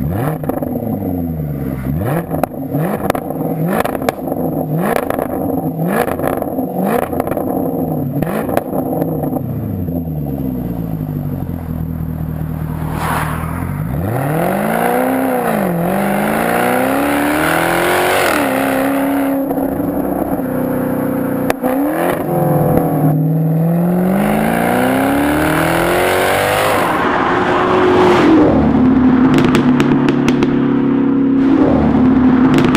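Jaguar F-Type's 5.0-litre supercharged V8 through a QuickSilver sport exhaust, revved in a quick series of blips at a standstill, with crackles and pops on the overrun each time it drops back. About thirteen seconds in, the car accelerates hard on the road, the engine note climbing and dropping back at several gear changes.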